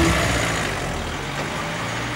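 Music ends just after the start, leaving a car engine running and street traffic noise.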